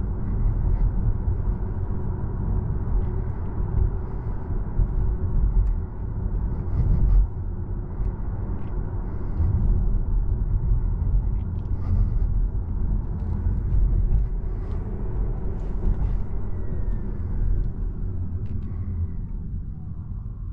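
Low rumble of road and tyre noise inside the cabin of a Volvo EX30 electric car at town speed. Near the end it eases as the car slows, and a faint whine falls in pitch.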